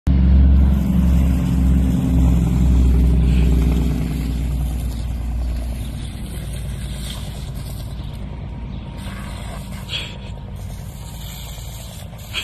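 Low engine rumble, loudest over the first four seconds and then fading to a steadier, quieter level.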